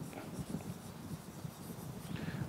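Faint sound of a stylus writing a word by hand on the glass surface of an interactive whiteboard, with light tapping and rubbing strokes.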